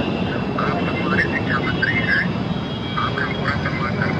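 A faint, thin voice coming from a mobile phone's speaker, heard over a steady hum of outdoor crowd and traffic noise.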